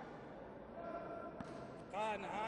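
Faint ambience of an indoor sports hall with distant voices and a single light thud about a second and a half in.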